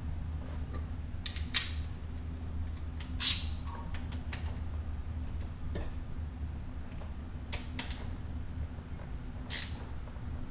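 Hand wrench clicking and clinking on the bolts of a motorcycle's front chain sprocket: a handful of sharp, separate metallic clicks spread over several seconds, over a steady low hum.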